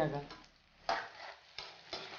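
Slotted metal spatula stirring and tossing chunks of brinjal and onion in a kadai of hot oil, with a sizzle: one stroke about a second in, then two shorter ones near the end.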